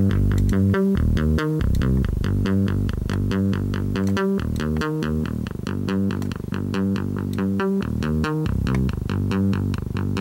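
Software synthesizer bass line playing back a quick repeating pattern of notes, about five a second, while a high-pass EQ filter is swept up to roll off its low end at about 120 Hz.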